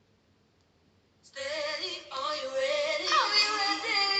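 Near silence, then about a second in a song starts suddenly: music with a woman's singing voice.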